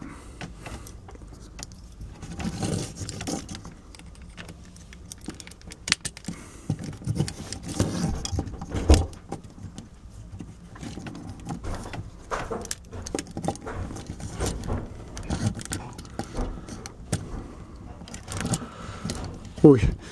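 Irregular clicks and clatter of the hard plastic parts of a Transformers Cybertron Soundwave figure as it is handled, with its weapons fitted and its limbs and wings adjusted.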